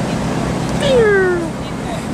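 A single drawn-out vocal cry, falling in pitch, about a second in, over the steady low drone of the ferry's engines.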